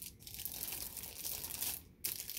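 Rustling and crinkling as a fabric travel bag's open flap and the plastic wrapping on the bowls inside are handled. It dies away just before the end.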